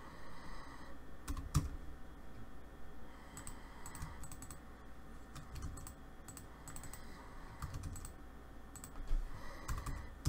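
Computer keyboard and mouse clicking irregularly as commands are entered, scattered keystrokes with a louder click about one and a half seconds in and another near the end, over a faint steady hum.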